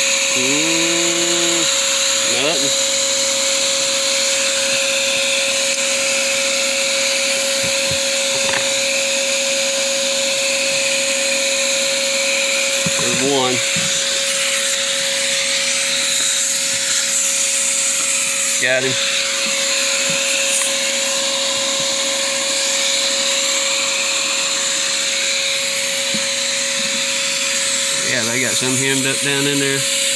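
Vacuum motor running loud and steady with a constant high whine, kept on to suck up small hive beetles from an open beehive. A few brief vocal sounds break in about a second in, twice in the middle, and near the end.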